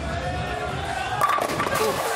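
Bowling ball rolling down the lane, then crashing into the pins a little over a second in, with a clatter of pins for a strike.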